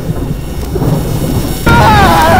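Thunderstorm: thunder rumbling under rain noise, then about one and a half seconds in a sudden loud crash with a warbling, distorted glitch tone.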